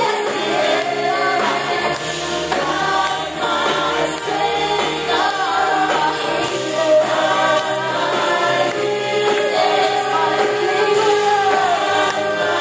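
A worship team of men and women singing a gospel praise song together into handheld microphones, amplified through a sound system, in steady continuous song.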